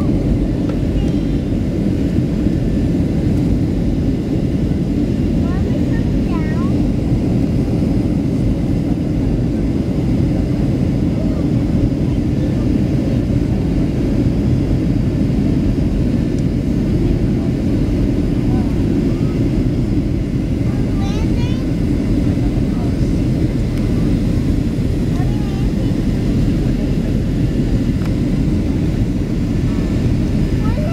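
Passenger airliner cabin noise in flight: the engines and rushing air make a steady low rumble. Faint voices come through now and then.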